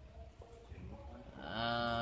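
A man's drawn-out hesitation sound 'à', held on one steady pitch, starting about one and a half seconds in. Before it there is only a faint murmur of distant voices.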